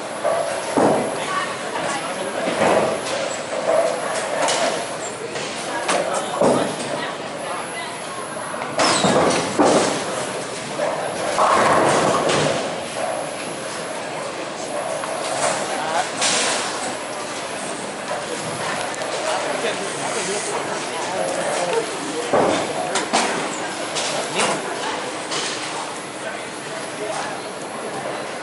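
Busy bowling-alley din: voices talking in the background, the rumble of balls rolling down the lanes, and pins crashing several times.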